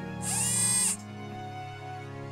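A brief, high-pitched mechanical whir from a robot sound effect. It lasts under a second, starting about a quarter-second in, over soft background music.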